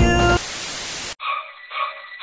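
Music breaks off into a short burst of static hiss, which cuts off suddenly a little over a second in. A thin-sounding piece of music with a beat about twice a second follows.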